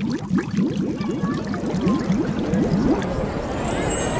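Sound-effect music for a channel logo intro: a rapid run of rising, bubbling water-drop bloops, several a second. Bright high chiming tones come in near the end.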